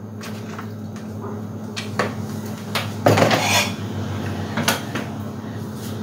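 Salad being dished out with a serving utensil: irregular clinks, knocks and scrapes against a plastic mixing bowl and a glass serving bowl as the shredded cabbage and crunchy ramen-noodle coleslaw is scooped across.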